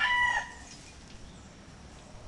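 A short steady-pitched bird call, a fowl-like crow, ending about half a second in, followed by faint outdoor background.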